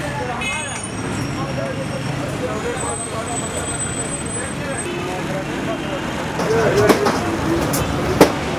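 Egg parathas frying in oil on a flat street-stall griddle, a steady sizzle under background street noise and indistinct voices. A few sharp clicks come near the end.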